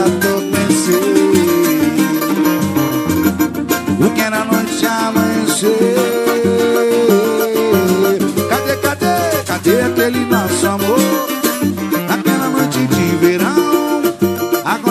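Samba-pagode band playing, with plucked strings prominent over a steady percussion groove.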